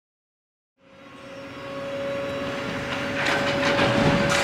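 Silence, then a rumbling mechanical noise fades in over the first couple of seconds. A steady hum runs through it, and irregular clattering builds near the end.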